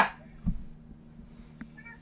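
The drawn-out end of a man calling out a name, then a quiet room with a soft low thump about half a second in and a faint click later on.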